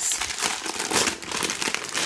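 Clear plastic bag crinkling and rustling as a plastic tray is pulled out of it, in quick irregular crackles.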